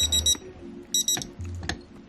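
Digital alarm clock beeping: two quick bursts of rapid high beeps about a second apart, then it stops.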